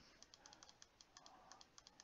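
Faint computer keyboard typing: a quick, uneven run of light key clicks.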